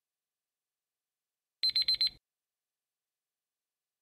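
Countdown timer's alarm beep, four rapid high-pitched beeps in quick succession about a second and a half in, signalling that the time to answer is up.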